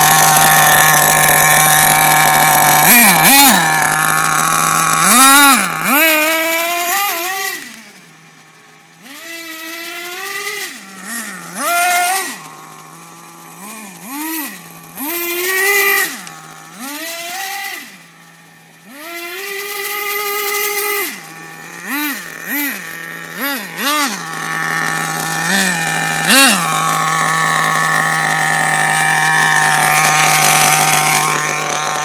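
Small nitro engine of a radio-controlled car, idling with a steady buzz and blipped again and again. Its pitch sweeps up and falls back in many short revs, with a couple of brief lulls.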